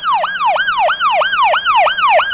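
Electronic siren in fast yelp mode, its pitch sweeping up and down about five or six times a second.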